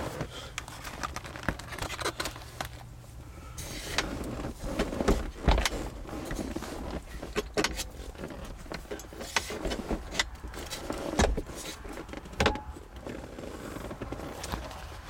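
Scattered clicks, knocks and rustling as a convertible soft top is pulled and worked at its front latches by hand, mixed with bumps of the camera being handled. The top has too much tension on it to latch one-handed.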